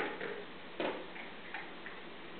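A few light knocks and clicks from a baby handling toys, the clearest a little under a second in, with two fainter ones near the end.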